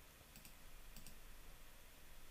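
A few faint computer mouse clicks, about half a second and a second in, against near silence.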